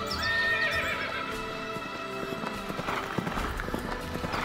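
A horse whinnies near the start. Galloping hoofbeats build up in the second half, over background music.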